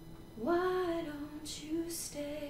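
A woman's solo singing voice comes in about half a second in on a held note that falls slightly, with a quiet acoustic guitar underneath.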